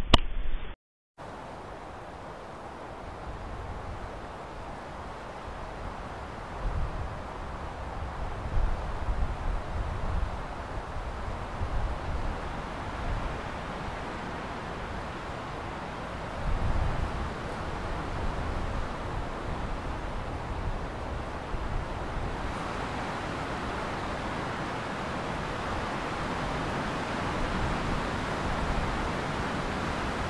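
Steady outdoor hiss with low, gusty rumbles of wind on the microphone now and then. The sound drops out completely for about half a second near the start.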